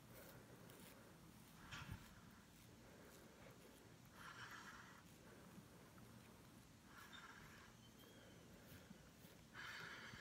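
Near silence, with faint short hisses about every two to three seconds as a cartridge razor shaves the upper lip.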